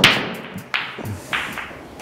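Pool balls knocking together and off the cushions just after the break, with a sharp clack at the start and then three softer knocks over the next second and a half as the balls spread.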